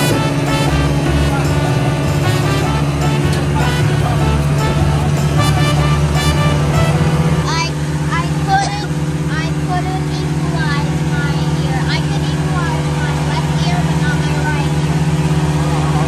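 A boat's outboard motor runs steadily at cruising speed, a constant low drone, with people talking over it.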